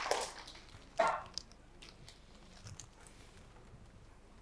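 Studio audience applause dying away, then one short, sharp yelp-like sound about a second in. After that only quiet room tone with a few faint knocks as gifts are set down on the side tables.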